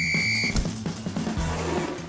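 A referee's whistle blown in one steady, high note that stops about half a second in, followed by background music with low sustained tones and a few soft beats.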